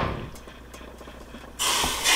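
Ribeye steak sizzling as it is laid into the hot, olive-oiled pan of a preheated DeLonghi MultiFry air fryer; the sizzle starts suddenly near the end after a quiet stretch with only a faint low hum.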